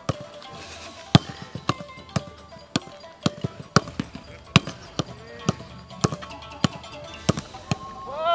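A soccer ball being trapped and kicked again and again in a fast passing drill on grass: sharp thuds about two a second, over faint background music.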